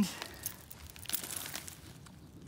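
Faint rustling and crinkling handling noise, with a few light clicks, as a steel snow chain on its plastic cable ring is gathered up by gloved hands.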